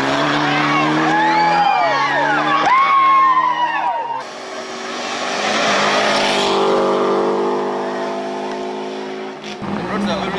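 Rally car engines at full throttle on a gravel stage. First comes hard revving through quick gear changes. After a cut, a second car approaches and passes, its engine note swelling and then fading away.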